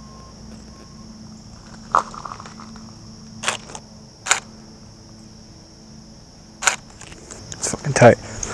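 Camera shutter firing single frames: five short, sharp clicks spaced about a second or two apart. Underneath runs a steady, high-pitched insect drone.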